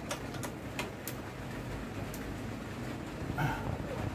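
Irregular metallic clicks and taps of hand wrenches on a bolt and nut as they are tightened on a scooter's steering-damper bracket.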